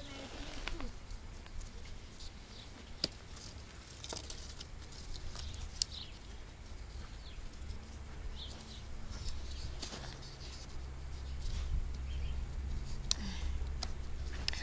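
Bare tree branches rustling and clicking against each other and the fence stakes as they are woven by hand into a wattle fence, with scattered sharp knocks over a low steady rumble that grows louder in the second half.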